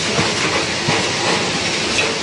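Automatic cartoning machine running, a steady mechanical clatter with repeated clicks from its moving parts as blister packs are fed through.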